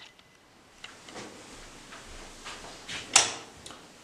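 Faint handling noises as objects are moved about, with one sharp knock about three seconds in.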